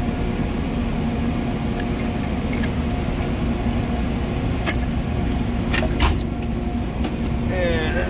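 Steady low hum of workplace machinery with a faint steady tone in it, broken by a few sharp metal clicks and knocks of hand tools being handled in a steel toolbox drawer, about five and six seconds in.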